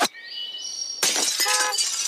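Sound effect of a golf shot gone wrong: a sharp smack, then glass shattering with ringing shards. About one and a half seconds in, a car alarm starts beeping in evenly spaced horn blasts.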